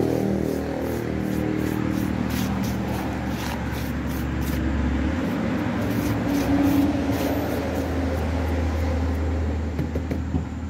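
A hand rubbing and pressing salt over a slab of beef in a plastic bowl, with faint irregular gritty scratching of the grains, over a steady low hum.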